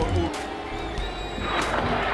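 Background music, with a noisy crash and splash about a second and a half in as a dugout Gatorade water cooler is knocked over and its cups and drink go flying.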